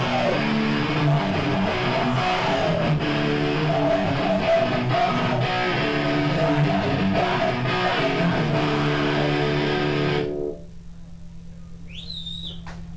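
A live hardcore band plays heavy distorted electric guitar with drums and bass. The music stops abruptly about ten seconds in, leaving a low steady hum.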